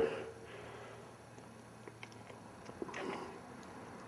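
Quiet room tone with a few faint, small clicks about two to three seconds in.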